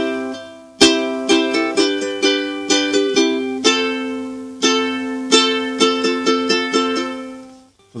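Ukulele strummed in a steady rhythmic pattern through C, G and F major chords. The last chord rings on and fades away near the end.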